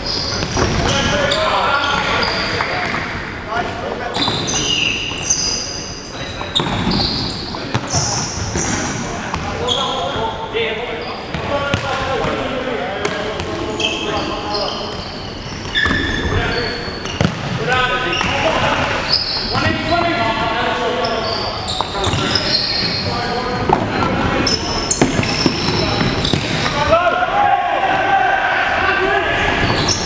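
Indoor futsal play in a reverberant sports hall: players shouting to each other, the ball being kicked and bouncing on the wooden floor, and shoes squeaking on the court.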